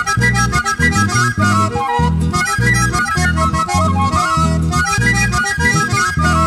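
Band music with an accordion playing the melody over guitars and a steady bass beat.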